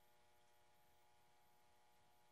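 Near silence from a Zenith Trans-Oceanic H500 tube radio tuned between stations: only a faint steady hum.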